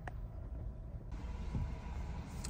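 Low, steady cabin rumble of a 2023 Honda CR-V Hybrid rolling slowly on electric power in EV mode, with no engine noise. There is one light click right at the start.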